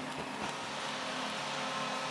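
Arena crowd cheering a home goal, a steady wash of noise.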